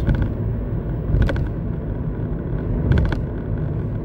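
Steady low rumble of a car heard inside the cabin, with a couple of faint clicks.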